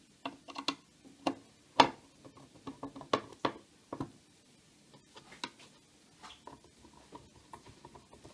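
Cross-head screwdriver fastening the screws of a Yale HSA 3500 alarm siren's plastic cover, with handling of the case. It gives irregular clicks and knocks of tool on plastic, the loudest about two seconds in, then lighter scattered ticking.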